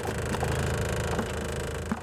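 Small fishing boat's engine running steadily under way, with a few light knocks as a freshly landed Spanish mackerel thrashes in a plastic tub.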